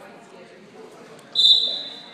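Referee's whistle: a single sharp, steady high-pitched blast about a second and a third in, fading over about half a second, over low gym murmur.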